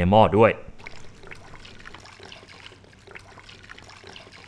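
Clear liquid poured from a plastic bottle into a metal cooking pot: a faint, steady trickle.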